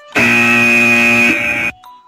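A short musical sting of steady, sustained electronic tones, about one and a half seconds long and cut off sharply. It acts as the transition cue between the quick news items in the podcast.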